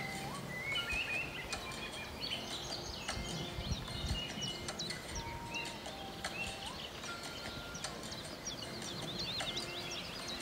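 Several songbirds singing around a reedy pond: many short chirps and quick whistles, overlapping throughout, with a few longer held notes. A low rumble sits beneath them, strongest about four seconds in.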